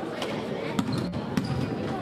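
A basketball bouncing on a hardwood gym floor, with two sharp bounces standing out about a second in, over the voices of players and spectators in the gym.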